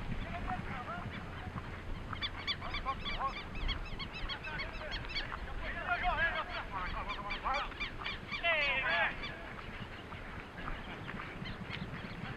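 A flock of birds calling, many short calls overlapping in bunches, with a quick run of calls about eight seconds in, over a low rumble.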